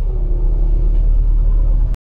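Steady low rumble of a car heard from inside the cabin, cutting off abruptly near the end.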